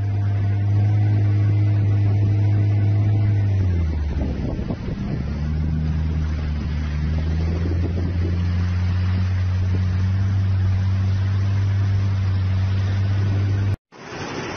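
An engine running steadily with a low hum. Its pitch drops about four seconds in, then holds at the lower note until it cuts off suddenly near the end.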